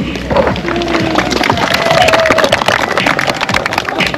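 Wedding guests clapping over music, dense and steady.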